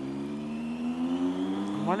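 Triumph Tiger motorcycle engine under way, its note climbing slowly and steadily as the bike gathers speed.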